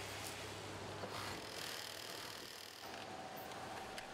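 Faint factory room noise: a low steady hum under an even hiss, its texture shifting slightly about a second in and again near three seconds.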